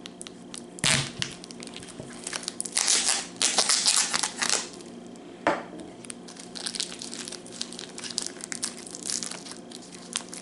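Plastic casing of a cured sausage stick being cut with a knife and peeled off by hand: a sharp click about a second in, a long loud spell of crinkling and tearing plastic, another click, then lighter crinkles as the wrapper is worked back.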